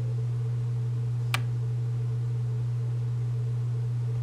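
A steady low hum, unchanging throughout, with a single short click about a second and a half in.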